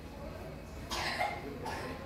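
A single short cough about a second in, over a steady low background hum.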